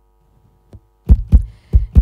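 Heartbeat sound effect: after a pause of about a second, deep thumps in a lub-dub rhythm, a quick pair followed by a third.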